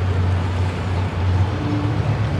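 Outdoor background noise: a steady, loud low rumble under an even hiss, with no distinct event standing out.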